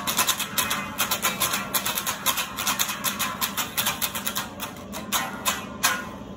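Acoustic guitar strummed in quick, steady strokes, played on alone after the last sung line of the song.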